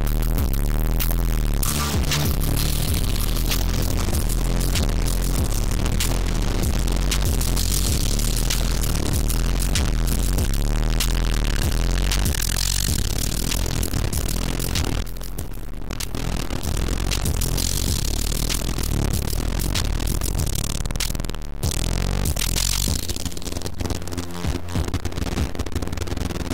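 Electronic music track playing back through Airwindows PhaseNudge and DeRez plugins: a dense, noisy, crunchy texture over a heavy bass, with two brief drop-outs in the middle and late part.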